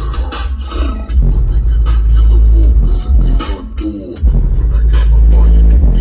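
Hip-hop music with a rapped vocal, played loud through a car's aftermarket sound system and heard inside the cabin. The subwoofer bass is very heavy; it drops out twice for about a second, near the start and again around the middle, then comes back in.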